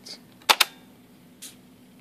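Two sharp mechanical clicks about a tenth of a second apart, from the cassette transport of a Fostex X-15 multitracker. This is typical of the play key latching out as the transport stops by itself, the fault being shown. A softer tick follows about a second later.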